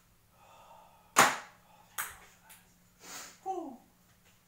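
A thrown ping-pong ball landing and bouncing: a sharp click about a second in, a second smaller click a second later and a faint third one, the bounces coming closer together. Near the end a short falling vocal exclamation.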